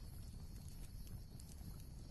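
A quiet gap holding only a faint, steady low background hum with no distinct events.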